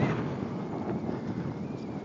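Wind buffeting the microphone, a steady rushing rumble.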